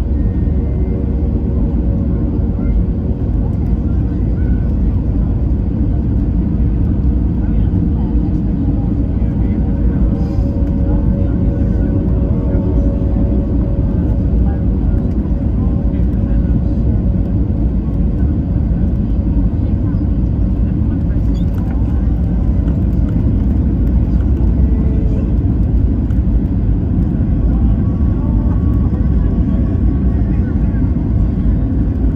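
Steady low rumble of jet engines and rushing air heard inside an airliner cabin during the final approach to landing, with a faint steady hum on top.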